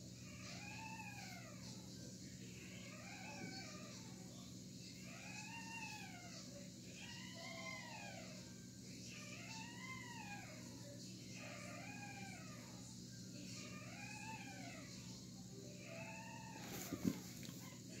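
Faint, repeated whining calls from an animal, each rising and then falling in pitch, about one a second, over a steady low hum.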